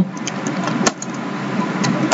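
Computer keyboard keys clicking in a few separate taps as a short phrase is typed, over a steady background noise.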